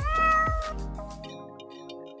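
A short cat meow sound effect, rising in pitch and then held for under a second, over background music. Soft sustained music tones take over about a second in.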